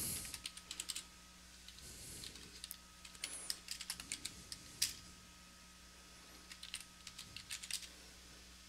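Computer keyboard keys being typed: short runs of quick, fairly faint key clicks with brief pauses between them.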